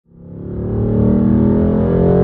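Car engine running at nearly steady revs while driving, the pitch creeping up slightly; the sound fades in over the first second.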